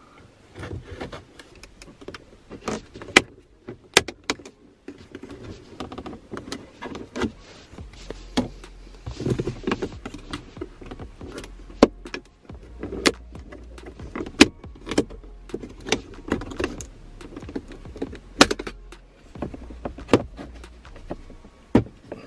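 Plastic centre-console trim on a MK3 Ford Focus RS being prised off with plastic trim tools: many sharp clicks and snaps as the retaining clips pop free, among scraping and rubbing of plastic on plastic.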